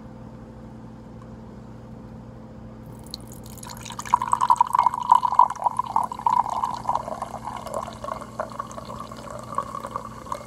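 Fanta Orange soda poured from a bottle into a glass measuring cup. The splashing pour starts about four seconds in and goes on to the end, with a fizzing hiss from the carbonation.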